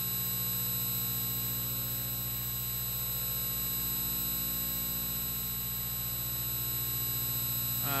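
Steady electrical mains hum in the sound system: a low, unchanging buzz with a ladder of higher overtones, and no other sound until a man's voice begins at the very end.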